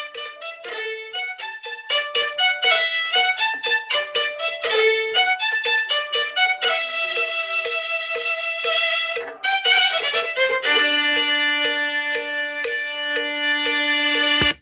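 Recorded playback of a bowed violin melody played along with a backing track of repeated plucked accompaniment notes, heard through laptop speakers, ending on long held notes. The violin's grace notes sit slightly out of line with the track.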